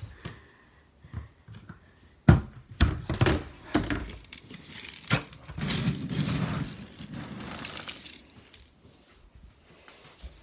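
Household handling noises: several sharp knocks and thuds from about two to five seconds in, followed by a couple of seconds of crinkling rustle.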